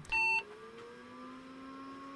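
Sanyo MBC-775 portable computer switching on: a short beep of about a quarter second just after the power button is pressed, then a hum that rises in pitch over about a second and settles to a steady tone as the machine comes up to speed.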